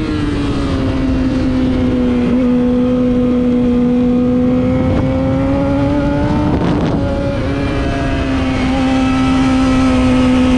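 Race car engine running at a steady, sustained pitch on track, a continuous droning note that rises and dips briefly about seven seconds in.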